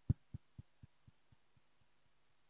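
A deep thump followed by a fading echo that repeats it about four times a second, dying away within two seconds. It is an edited-in sound effect for a graphics transition on the stream.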